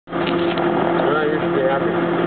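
Steady engine hum with a constant low drone, with faint voices talking over it.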